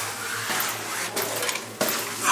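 Footsteps and shuffling on a steep steel staircase, with a sharp knock near the end, over a steady low hum.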